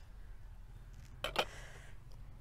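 Quiet pause with a faint steady low hum, broken once a little past halfway by a short, brief noise.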